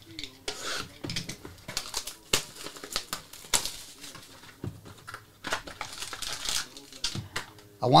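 Hands handling and opening a cardboard box of Obsidian football cards: a string of sharp taps and clicks as the box is turned and its lid lifted off, with some crinkling.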